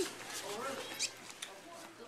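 A faint, short high voice, then two sharp clicks about a second in and a little later.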